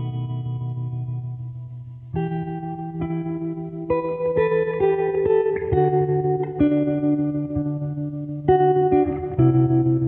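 Background music: a guitar through effects playing slow chords. A held chord dies away, then about two seconds in new chords are struck every second or two.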